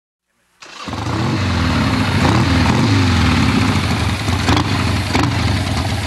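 Silence for about half a second, then a motor vehicle engine running close by, a loud steady low rumble, with a couple of short knocks a little after the middle.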